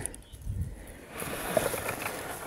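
Dry, ripe rapeseed stalks and pods rustling and crackling faintly as a hand reaches in and picks a pod, with a few small clicks.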